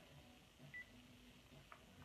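Near silence broken by one short electronic beep from a phone less than a second in, and a faint click near the end.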